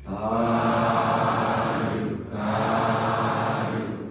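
Buddhist chanting by voices in unison, in held phrases of about two seconds each with a short break between them.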